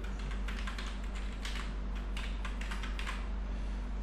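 Keystrokes on a computer keyboard: a quick, irregular run of key clicks over a steady low hum.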